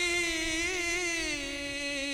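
A man's voice singing one long held note of Sikh kirtan, wavering slightly and sliding a little lower in pitch near the end.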